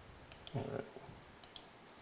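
Faint clicks of a computer mouse, a quick pair near the start and another pair about a second and a half in.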